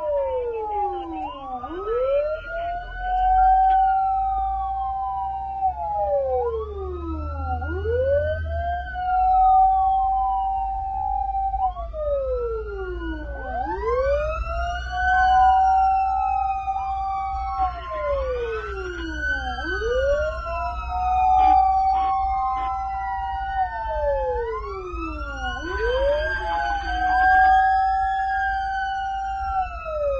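Fire truck siren wailing, heard from inside the cab: two siren tones rise, hold and fall out of step, repeating about every six seconds. A steady low engine rumble runs underneath.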